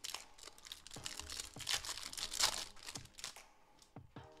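Foil Pokémon card booster pack wrapper crinkling and tearing as it is handled and opened, loudest about two seconds in.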